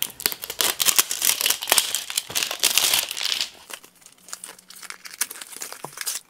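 Product packaging being opened by hand: a small box and the plastic pouch inside it crinkling and crackling. It is thick for the first three seconds or so, then thins to scattered rustles and clicks.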